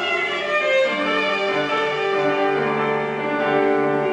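Violin and piano playing a slow instrumental passage of sustained, held notes in a classical art-song arrangement, between the soprano's sung phrases.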